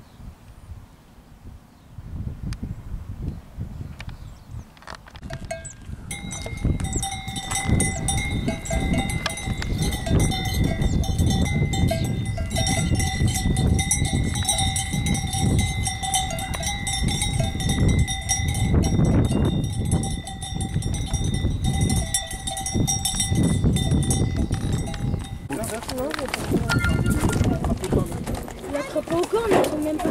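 Bells on Camargue cattle ringing and clanking steadily as the herd walks, over a low rumble. The bells start about six seconds in and stop suddenly a couple of seconds before the end.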